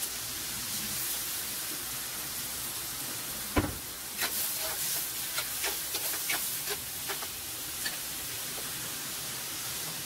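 Pork cubes frying in a wok with a steady sizzling hiss, just after fish sauce has gone in. About three and a half seconds in there is a single knock, then a spatula clinks and scrapes against the pan as the meat is stirred.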